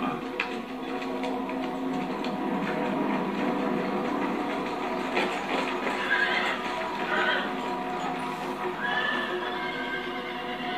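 Horses from the anime's soundtrack: hooves clopping and a few short whinnies over steady background music.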